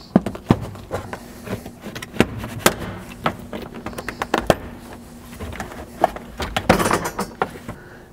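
Plastic retaining clips of a vehicle's interior quarter trim panel snapping free as the panel is pried and pulled loose: a run of sharp clicks and knocks, with a stretch of rustling and scraping plastic near the end. A faint steady hum runs underneath.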